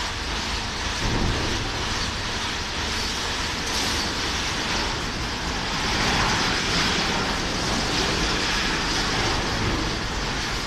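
Ceccato Antares gantry car wash running over a car: its rotating brushes and water spray make a steady mechanical rumble and hiss that gets a little louder about a second in.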